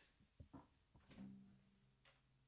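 Quiet handling noise during a guitar change: a few faint knocks and rustles about half a second and one second in, then a faint low ringing tone, as of a guitar string sounding while the acoustic guitar is moved.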